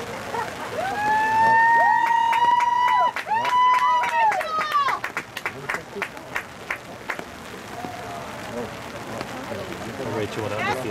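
Two long, high-pitched held shouts from the sideline, the first about two seconds and the second a little shorter, each rising at the start and dropping away at the end, with a run of quick hand claps under and after them.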